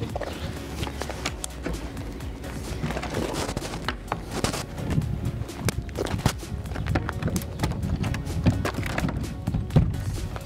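Background music with irregular footsteps on gravel and knocks from a large wooden shed door being carried and set upright in its opening.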